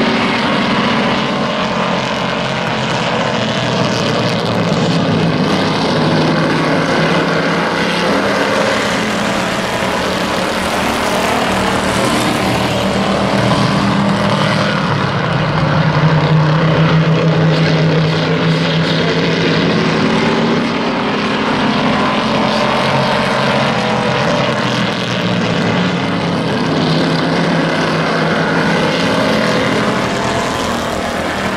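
A field of hobby stock race cars running at speed around a paved oval, their engines making a continuous loud drone that swells and eases as the cars pass, strongest around the middle.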